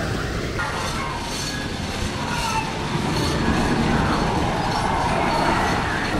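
Phoenix wooden roller coaster's train rumbling and clattering along its wooden track, a steady heavy rumble, with faint voices of people mixed in.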